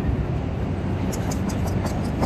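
Steady low rumble of city street traffic, with a few faint ticks in the second half.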